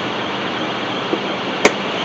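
A single sharp click a little after one and a half seconds in, over steady background noise: a move being played in a blitz chess game with the player's last seconds running out.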